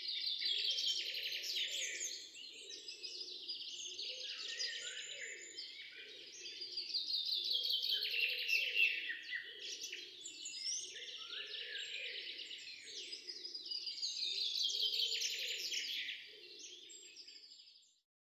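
Chalk scratching and squeaking on a chalkboard as it writes, a long run of quick scratchy strokes in uneven groups that tails off near the end.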